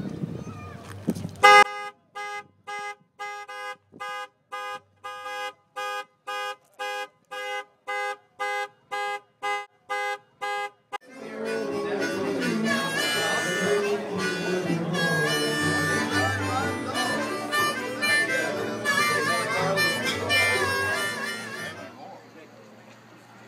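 Car alarm sounding the car's horn in short, evenly spaced honks, about two a second, set off on Becky's Saab convertible with its keys locked in the trunk. About eleven seconds in it gives way to harmonica music with a bass line underneath.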